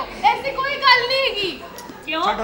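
High-pitched, animated voices speaking, fading off near the end.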